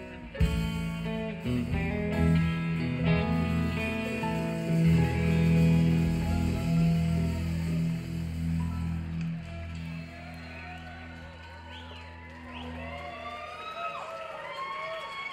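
Live band of electric guitars, bass and drums holding a long chord that fades away. About ten seconds in, the audience starts whooping and whistling.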